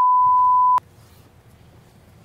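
Steady single-pitch test tone of a colour-bars broadcast card, cutting off abruptly under a second in, leaving faint room tone.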